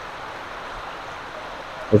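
Steady hiss of rain falling, with water pouring off a piece of guttering.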